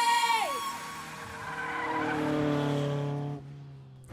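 A racing engine sound effect. A high engine whine drops sharply in pitch, then a lower engine drone swells and cuts off suddenly about three and a half seconds in.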